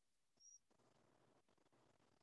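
Near silence: the quiet of an open video-call line, with one faint, very brief high blip about half a second in.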